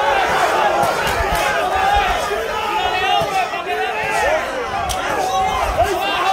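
Ringside boxing crowd, many voices shouting and calling out over one another, with a few sharp knocks, one louder near the end.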